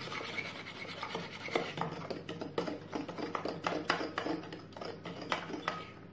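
Manual whisk churning a thin egg, sugar and milk batter in a bowl: irregular scraping, sloshing strokes, several a second.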